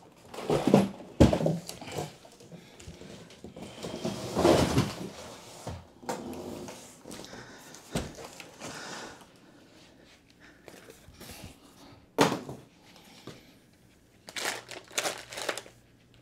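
A large cardboard shipping box being handled and tipped to empty out the chair parts inside: irregular thumps, knocks and cardboard scraping and rustling, with a sharp knock about twelve seconds in and a cluster of knocks near the end.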